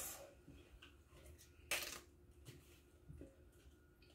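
Faint rustling and crinkling of romaine lettuce leaves and a paper towel being handled and pressed into a glass bowl, with one louder crinkle just under two seconds in and a couple of softer ones after.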